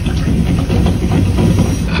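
A nature-documentary trailer's sound effects played loud through a Sonos Beam (Gen 2) soundbar with a Sub Mini subwoofer and two Era 100 rear speakers: a steady, dense rumble and hiss with heavy bass.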